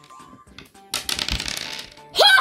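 A small plastic die rolled across a hard tabletop, a rapid clatter of clicks lasting just under a second about halfway through.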